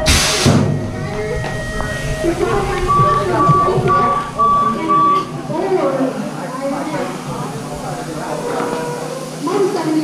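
BMX starting-gate cadence tones: a row of short, evenly spaced high beeps about three to five seconds in, over steady crowd chatter and PA sound. A brief loud rush of noise comes at the very start.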